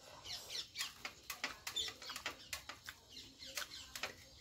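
Close-miked eating sounds of rice and curry being chewed: wet mouth smacks and clicks, a few a second.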